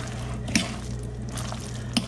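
A hand squishing and mixing mayonnaise-coated bow-tie pasta salad in a glass bowl: soft wet squelching, with a couple of light clicks.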